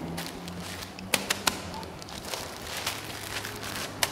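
Plastic bags of grain being handled and set down on a stacked wall of bags, the plastic crackling with a few sharp taps a little after a second in.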